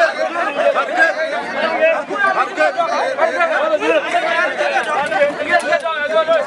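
Several men talking over one another: a lively, continuous chatter of voices.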